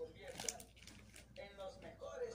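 Faint voices in the background, with no clear words, and a couple of sharp clicks about half a second and a little over a second in.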